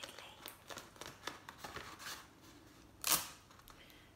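Paper plates crinkling and small clicks of handling as strips of sticky tape are pressed around their rims, with one short, louder rip of tape about three seconds in.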